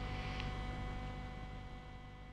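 Faint steady electrical hum made up of a few constant tones over a low rumble, fading gradually. There is a faint tick less than half a second in.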